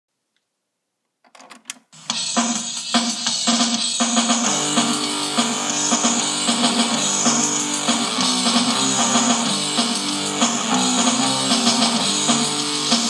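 Rock song intro with guitar and drums played from cassette on an Aiwa stereo system. Silence for just over a second and a few short clicks, then the music starts about two seconds in and runs steadily.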